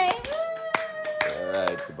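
Hand clapping: a few uneven, sharp claps celebrating the end of a graduation name reading.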